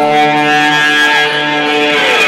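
Live band music: a chord of long, steady held notes rings on, with no drum hits.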